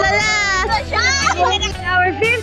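A group of excited children and teenagers squealing and laughing together in high voices, over a steady low hum.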